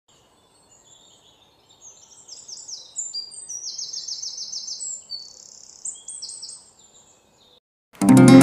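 Small birds chirping, several at once, in quick runs of short high chirps; it starts faint about a second in and cuts off suddenly just before the end.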